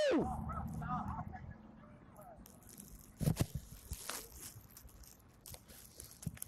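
Police body-camera audio outdoors: a man shouts "move!", then faint voices and a few short rustles and knocks from the camera's microphone.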